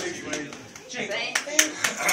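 Scattered, irregular hand claps from a few people in a small room, mixed with talk.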